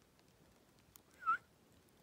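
A dog gives one short, high whine about a second in, its pitch dipping and rising.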